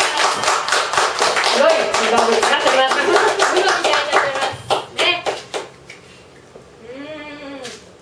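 A small audience clapping with voices mixed in; the clapping thins out and stops about five seconds in. Near the end one voice gives a drawn-out call that rises and falls in pitch.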